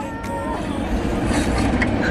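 Car cabin noise: a steady low rumble with an even hiss above it. A voice trails off in the first half second.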